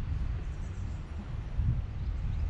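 Outdoor ambience dominated by a low, uneven wind rumble on the microphone.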